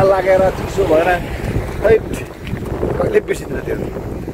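Wind on the microphone, a steady low rumble, under a man's voice speaking in short bits in the first half and again around three seconds in.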